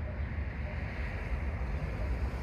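Wind buffeting a phone's microphone: an uneven low rumble with a faint hiss above it.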